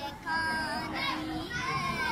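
A boy singing, with drawn-out held notes.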